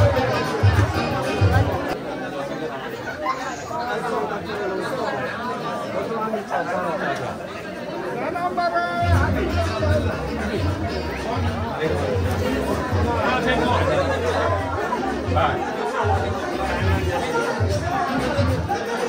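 Party guests chatting in a large hall over background dance music. The music's bass beat drops out a couple of seconds in and comes back about halfway through.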